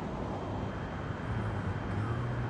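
Steady urban background noise, a low rumble of city traffic, with a low hum coming in about halfway through.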